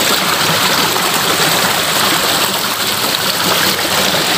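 Steady rush of water flowing in a small irrigation ditch.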